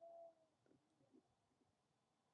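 Near silence: room tone, with one brief, faint, slightly falling tone right at the start.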